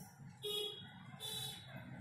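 Dry-erase marker squeaking on a whiteboard as it writes. It gives two short, faint, high squeaks, about half a second in and again a little past a second.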